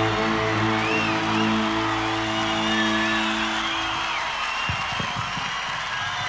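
A live rock band holding its closing chord, which stops about four seconds in, over a cheering crowd.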